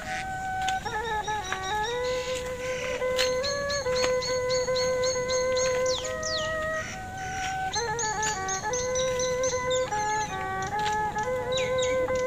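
Background instrumental music: a single wind-instrument melody moving in steps from note to note.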